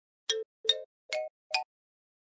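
Cartoon sound effect: four short popping notes, each a little higher in pitch than the last, one as each of four wooden puzzle pieces pops out onto the board.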